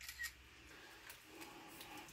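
Near silence with a few faint, short clicks, mostly in the first half-second.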